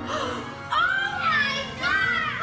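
A woman and two children exclaiming together in amazement: long, high, rising-and-falling cries that start about two-thirds of a second in, over background music.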